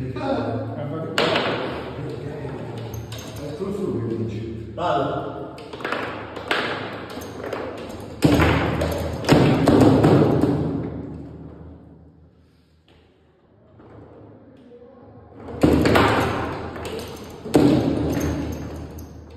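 Table football rally: sharp knocks of the ball struck by the plastic figures and hitting the table walls, with the metal rods clacking. The hardest hits come about eight and nine seconds in and again near the end, with a short lull just past the middle.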